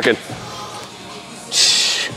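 A lifter's short, sharp breath hissed through the teeth, about one and a half seconds in, as he braces on a bench press machine before the lift.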